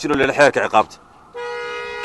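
A man's voice for a moment, then after a short pause a vehicle horn sounds one long steady note, starting suddenly about two-thirds of the way in and held.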